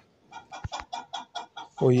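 Chicken clucking softly: a quick run of short, evenly spaced clucks.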